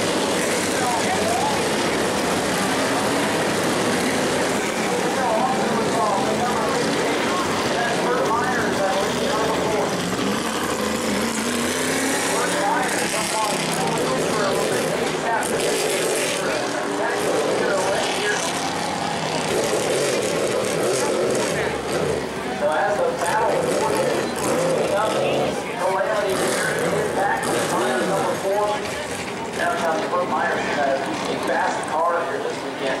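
Tour-Type Modified race cars' engines running and revving at low speed under caution just after a crash, with voices mixed in over them.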